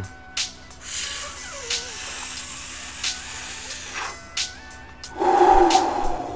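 A person drawing a long hit of weed: a couple of sharp clicks and about three seconds of steady hissing inhale, then a loud voiced sigh of an exhale near the end. Faint background music runs underneath.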